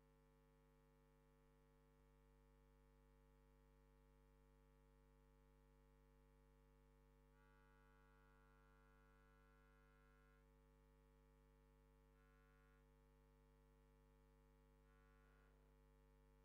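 Near silence with only a faint, steady electrical hum.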